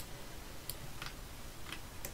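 A few faint, sharp computer mouse clicks, irregularly spaced, over a low steady hiss.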